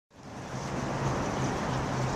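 A steady low hum under a broad wash of water and wind noise on a fishing boat, fading in just after the start.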